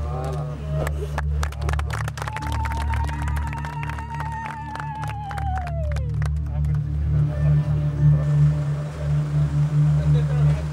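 A crowd clapping irregularly for a few seconds, while a single high trilled ululation is held for about four seconds and then slides down in pitch and stops. A steady low rumble runs underneath.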